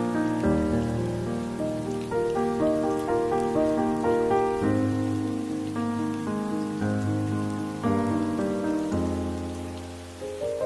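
Slow, soft instrumental sleep music of held chords over low bass notes, changing every second or so, with steady rain sound mixed beneath it.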